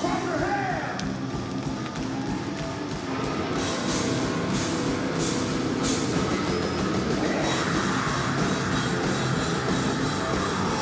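Heavy metal band playing live: distorted electric guitars and a drum kit with cymbal crashes, with the singer's vocals over them.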